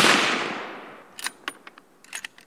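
A gunshot sound effect with a long fading echo, followed by a few light, sharp clicks.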